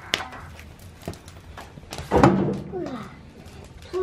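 A log dropping into a wood stove's firebox with a heavy thunk about two seconds in, after a couple of lighter knocks of wood against the stove.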